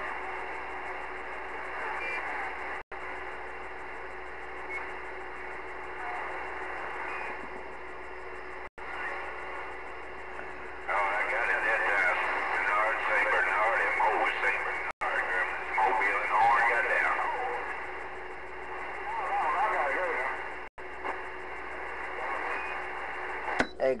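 Galaxy CB radio receiving: a steady hiss of static, broken by a few short dropouts. From about eleven seconds in, weak, garbled voices of distant stations waver in and out through the noise, the signal coming and going as band conditions fade.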